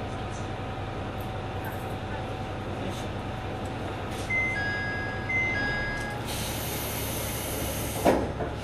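Diesel railcar standing with its engine idling, a steady low rumble with a faint whine. About four seconds in, a two-tone door chime sounds twice, then a loud air hiss from the door gear runs until the doors thump shut at the very end.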